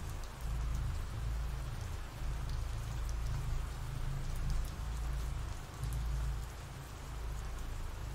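Steady rain ambience: an even hiss of falling rain with a low rumble underneath.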